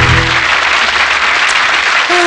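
A music track with a heavy low beat ends about half a second in, leaving a studio audience applauding.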